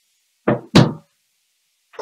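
Two quick knocks, about a quarter-second apart, as a plastic power adapter brick and its cable are set down on a wooden desk.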